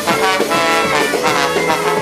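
Live band playing loud, with a horn section of trombone and saxophone carrying the melody.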